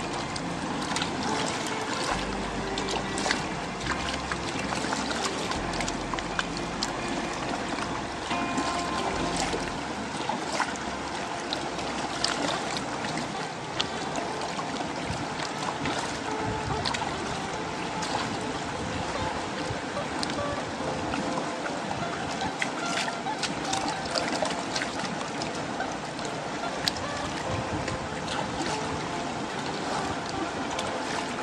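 Water sloshing and splashing as a large wooden gold pan is swirled and rinsed in shallow river water, with many small splashes and trickles. Music plays in the background.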